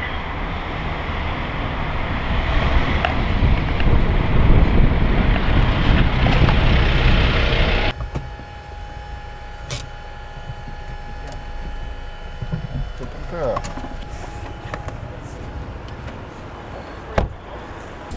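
Loud road traffic noise, vehicles running in a busy street, building over several seconds, then cutting off abruptly to a much quieter street background with a faint steady hum.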